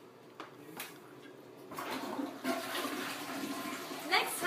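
A toilet flushing: two faint clicks, then rushing water that starts a little under two seconds in and grows louder.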